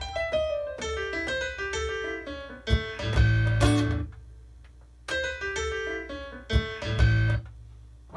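Piano playing a melodic passage with bass notes, pausing briefly about four seconds in, then playing on and stopping shortly before the end.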